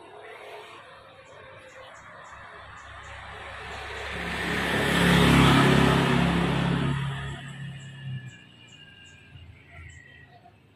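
A motor vehicle passing along the street. Its engine and road noise grow steadily louder, peak about halfway through, and die away by about eight seconds in.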